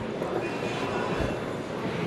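Steady background din of a large retail store, an even hiss-like noise with a soft low bump about a second in.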